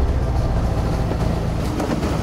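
Car engine and road noise heard from inside the cabin, a steady low hum while driving.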